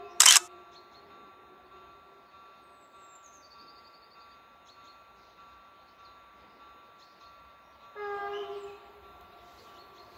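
An approaching commuter train's horn sounds once, briefly, about eight seconds in, heard from a distance. Just after the start there is a single loud, sharp click.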